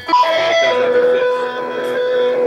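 A held electronic instrument tone, as from a synth or effects pedals, steps down in pitch twice in the first second and then holds one steady note.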